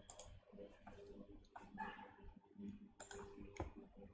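Faint, irregular clicks and taps, about four of them, the sharpest about three seconds in.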